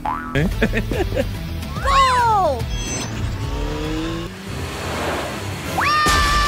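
Cartoon sound effects over background music: sliding, boing-like pitch glides, one rising at the start, one rising then falling about two seconds in, a few falling slides around four seconds, and a quick rising sweep near the end.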